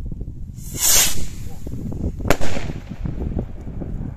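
Firework rocket going up: a brief hissing rush about a second in, then one sharp bang a little after two seconds, over a low wind rumble on the microphone.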